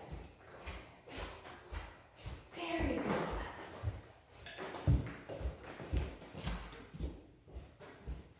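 Footsteps of sneakers walking across a hard wood-look floor, about two steps a second, with a short stretch of voice about three seconds in.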